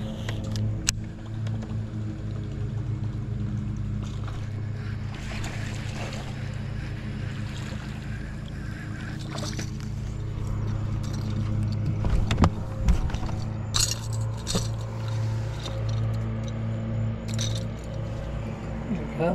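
A hooked smallmouth bass being fought to the boat and lifted aboard on a baitcasting rod, with splashes and knocks clustered between about twelve and fifteen seconds in, over a steady low hum.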